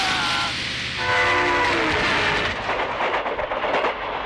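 A train running past on the film's soundtrack, a continuous rumble, with its horn sounding as a chord of steady tones about a second in.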